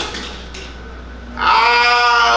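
A man's voice through a handheld microphone, holding one long, wordless high note that starts about one and a half seconds in. Before it there is only quiet room sound with a steady low hum.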